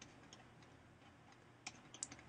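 Faint ticks of a stylus tapping on a tablet screen while writing, with one sharper click near the end, over near silence.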